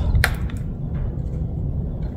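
A screwdriver working a hose clamp: one sharp click about a quarter second in and a fainter one soon after, over a steady low rumble.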